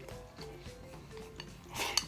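Background music playing, and near the end a loud, rasping eating noise as food is shoveled with chopsticks from a bowl held to the mouth.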